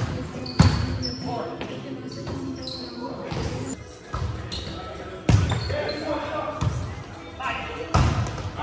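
Volleyball being struck during an indoor rally: several sharp slaps of hands and arms on the ball, one near the start, another just after, and more in the second half, echoing in a large gymnasium. Players' voices call out between the hits.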